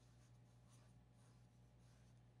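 Pencil sketching on drawing paper: a few faint, short scratchy strokes, over a low steady electrical hum.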